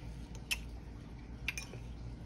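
Metal fork clinking against a ceramic plate while cutting a bite from a slice of pie: a few light clinks, about half a second in and again at about a second and a half.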